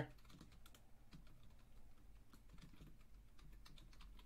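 Faint typing on a computer keyboard: a quick, irregular run of keystroke clicks as an email address is entered.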